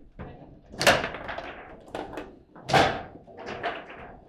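Table football play: hard plastic knocks and clacks as the players' men strike the ball and the ball and rods hit the table. The two loudest knocks come about a second in and near three seconds, with lighter clicks between.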